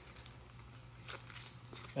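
Faint rustling and a few light clicks of an extension cord and its plastic plug ends being handled as they are pushed through the last loop of a daisy-chain wrap.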